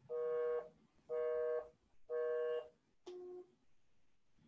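Electronic call-signal tones from a phone or calling app: three identical beeps about a second apart, then a shorter, lower beep.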